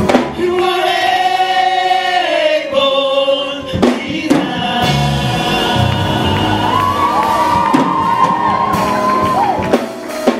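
Live gospel worship song: a group of vocalists sings long held notes together over a band with drums and bass, the voices sliding between pitches near the end.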